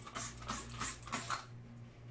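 Trigger spray bottle squirting a liquid cleaner onto a sink: a quick run of about five short, hissy sprays that stops shortly before the end.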